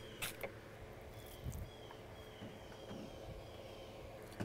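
Quiet outdoor ambience with a small bird chirping faintly, short high chirps about every half second, and a few soft clicks near the start.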